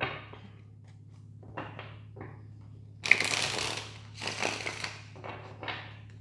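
A tarot deck being shuffled by hand: scattered soft card sounds, then two longer, louder bursts of flicking cards about three and four and a half seconds in.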